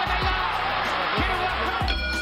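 Background music with deep bass-drum hits that fall in pitch, recurring every half second to a second under a dense, hissy upper layer.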